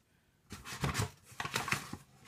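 Granulated sugar being tipped from a plastic measuring cup into a stainless steel bowl: a quick run of short rustling, scraping and tapping noises that starts about half a second in.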